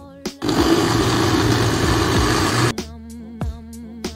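Countertop blender running for about two seconds, blending a fruit smoothie; it starts about half a second in and cuts off suddenly. Background music with a beat plays around it.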